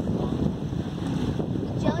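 Wind buffeting the microphone: a steady, fluttering low rumble, with a voice briefly at the end.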